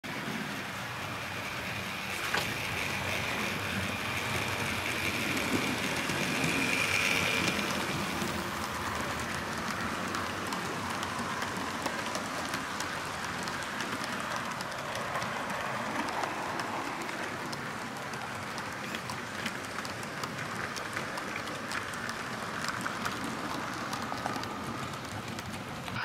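Model freight train wagons rolling past on the layout's track: a steady rumble of small metal wheels on the rails with fine, rapid clicking. A thin high tone runs over the first several seconds.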